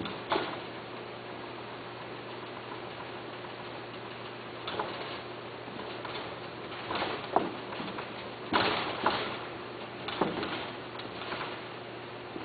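Scattered light knocks and rustles, about eight in all and loudest a little past the middle, from cats moving about a wire pen with a plastic floor, over a steady faint hum.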